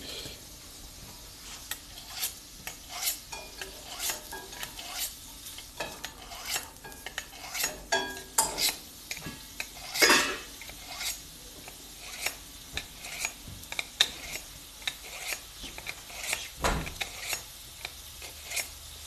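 Kitchen utensils working food: irregular light taps and clicks, about one or two a second, with one louder knock about ten seconds in.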